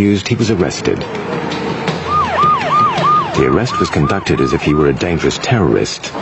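A siren sounding a fast repeating up-and-down yelp, about three sweeps a second. It starts about two seconds in and stops near five seconds, over voices.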